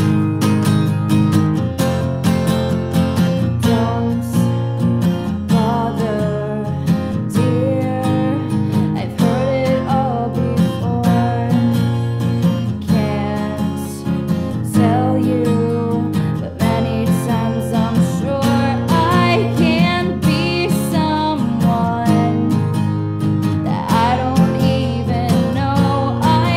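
Music: a song carried by strummed acoustic guitar, with a bending melody line over the chords through much of the stretch.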